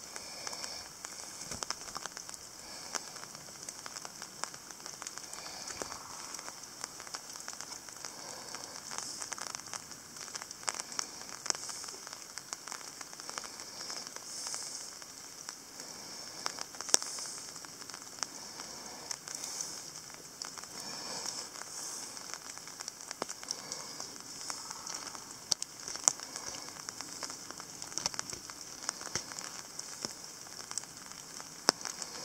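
Footsteps crunching and rustling through dead leaves and gravel on a woodland path, a steady run of irregular small crackles with a few sharper snaps.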